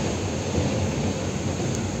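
Steady low rumble and rushing noise of an electric commuter train running, heard from inside the carriage, with another train passing close alongside on the next track.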